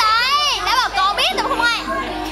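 Teenage voices shouting and squealing excitedly at a high pitch, with sharply swooping calls. About a second and a half in, sustained notes of a backing track come in underneath.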